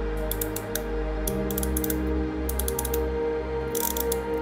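Ratcheting crimping tool clicking in four quick runs as it is squeezed to crimp insulated ferrule terminals onto wire ends, over background music with sustained low notes.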